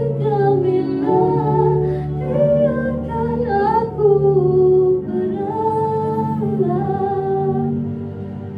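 A young woman singing a slow melody with long held notes into a handheld microphone, over a backing track of sustained low notes. Her singing stops near the end while the backing carries on.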